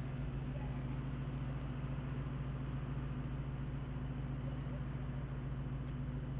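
Steady low hum with an even hiss and no distinct events, from the police car's running engine and cabin as picked up by its dash camera.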